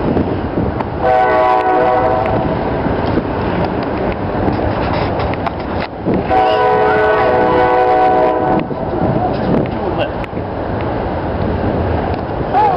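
A horn sounding in several steady tones at once blows two long blasts, one about a second in lasting about a second and a half, the other about six seconds in lasting a little over two seconds, over steady background noise.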